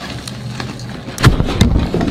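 A watermelon bursting: a short quiet stretch, then about a second in a sudden loud burst as it splits open, followed by a low rumble.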